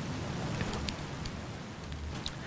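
Quiet room tone through the lectern microphone: a steady low hum and hiss with a few faint ticks.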